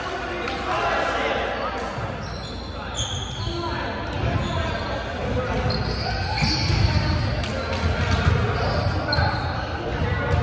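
Balls bouncing and being hit on a hardwood gym floor, echoing through a large gymnasium, with players' voices indistinct in the background.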